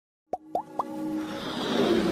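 Intro sound effects for an animated logo: three quick rising blips about a quarter second apart, then a swelling whoosh that builds toward the start of the intro music.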